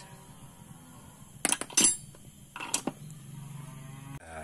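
Metal parts clinking as they are handled: two sharp clinks a little over a second in, then a duller knock about two-thirds of the way through, from steel nuts and hand tools knocking together.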